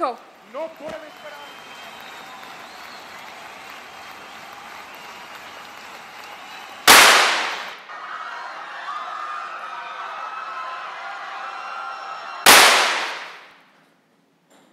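Two loud gunshots about five and a half seconds apart over a steady background of crowd noise. The sound fades out after the second shot.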